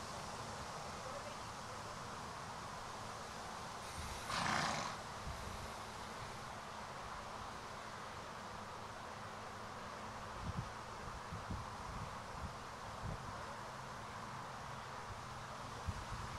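Steady wind noise on the microphone, with leaves rustling in the trees. About four seconds in comes one short, loud, breathy blast, and a few soft low thumps follow in the second half.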